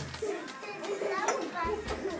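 Young children's voices chattering and talking over one another in a classroom.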